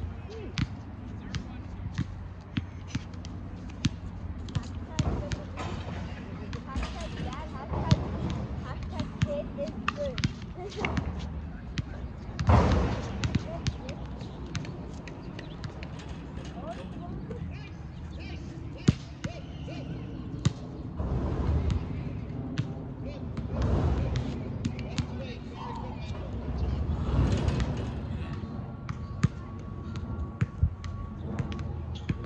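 Soccer ball being kicked and dribbled on grass: short sharp thuds scattered throughout, the sharpest about nineteen seconds in, over a steady low rumble. Indistinct voices come in between, loudest about twelve seconds in.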